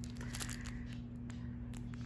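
Faint crinkling and a few light clicks from a clear plastic sticker package being handled, mostly in the first half-second, over a steady low hum.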